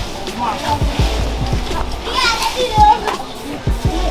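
Several people's voices calling and chattering, some of them high-pitched, over music.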